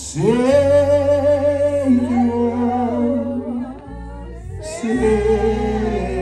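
A man singing a slow, wordless gospel melody through a microphone in two long held phrases, with a short pause between them. A guitar plays low sustained notes underneath.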